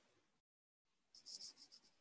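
Near silence over a gated video-call line, with a faint high rustle in the second half.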